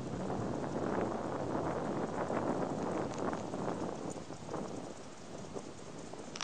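Wind buffeting the microphone outdoors, a rough steady rush with scattered faint clicks, easing off in the second half.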